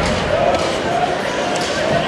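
Ice hockey play right after a faceoff, heard close behind the glass: a few sharp clacks of sticks and puck on the ice over crowd voices and shouts in the arena. Loud arena music cuts off right at the start.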